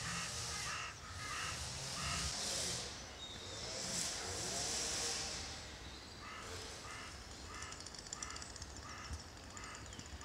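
A bird calling in runs of short, evenly spaced notes, a couple a second, for the first two seconds or so and again through the last four, over a steady outdoor hiss.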